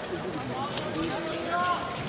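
Background chatter of several people talking in a large sports hall, with a few light clicks.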